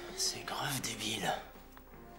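Hushed, whispered dialogue from a TV episode playing, with faint music beneath it.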